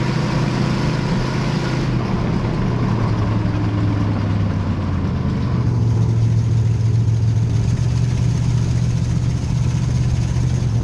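Dirt-track race car's engine heard from inside the cockpit, running steadily without hard revving. About six seconds in, the high hiss drops away and the low engine note grows stronger.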